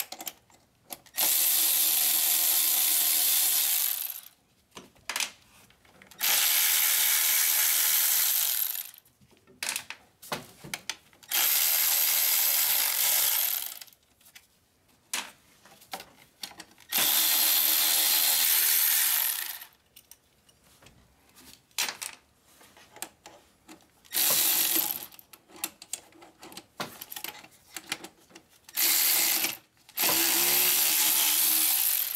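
Cordless electric ratchet running in bursts of about two to three seconds, spinning bolts out near the turbocharger, about six times in all, the last two short. Small clicks of tool handling come between the runs.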